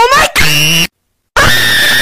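A person screaming in excitement: a sharp rising shriek, a short burst, a brief silence, then a long high-pitched scream held steady.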